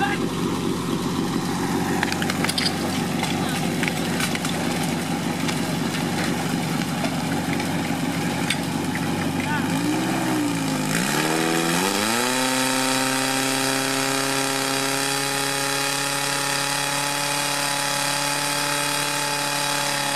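Portable fire pump's engine running steadily, then about ten seconds in its pitch dips and rises and climbs to a higher, steady note as it is throttled up to pump water through the hoses.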